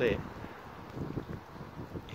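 Wind rumbling on the microphone, a low, even noise, after a last spoken word at the start.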